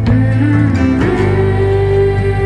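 Band music without singing: an instrumental passage led by guitar, moving to a new chord about a second in.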